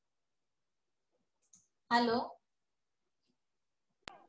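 Dead silence on a video-call line, broken about two seconds in by a single spoken "hello".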